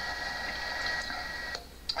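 A steady high electronic tone over a hiss, lasting about a second and a half and then cutting off suddenly.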